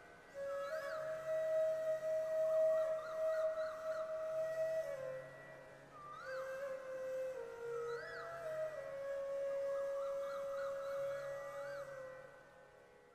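Slow bansuri-style flute music: long held notes with arching ornamental slides, over soft low notes that come and go.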